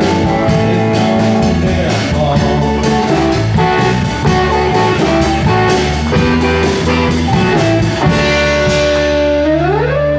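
Live bar band playing a blues-rock song, with electric and acoustic guitars to the fore. Near the end the band settles onto held notes, with one note sliding upward.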